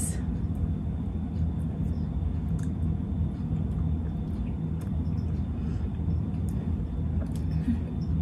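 A steady low background hum, with a few faint small clicks over it.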